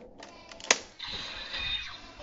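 A Brave Dragon Wonder Ride Book snapped into a DX Seiken Swordriver toy belt, with one sharp plastic click just past the middle. About a second in, the belt's electronic music starts playing from its small speaker.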